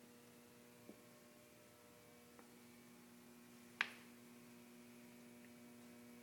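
Near silence: a faint steady electrical hum, with a few small clicks, the sharpest about four seconds in.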